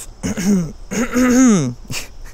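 A man clearing his throat, a voiced rasp in two parts, the second longer and falling in pitch at its end.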